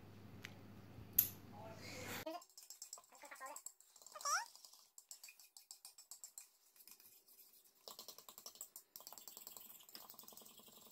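Sped-up sound of a fork whisking dessert mix in a mixing bowl: quiet, rapid clicking and tapping, starting after about two seconds of faint room tone. A brief high squeak that glides in pitch, like a sped-up voice, comes about four seconds in.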